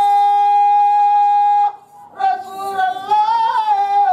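A male devotional bhajan singer's amplified voice holds one long, level high note, breaks off for a moment, then carries on in a wavering, ornamented melodic line with vibrato.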